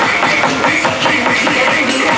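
Loud electronic dance music with a steady beat, played at high volume through a sound truck's car-audio system driven by Stetsom amplifiers.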